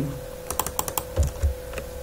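Computer keyboard keystrokes: a quick run of about six sharp key clicks, then a few duller knocks, as a URL is entered into a text field.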